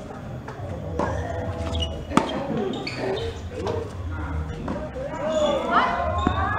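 A sharp pop of a tennis ball being struck about two seconds in, the loudest sound, with fainter ball knocks around it, over people talking in the background.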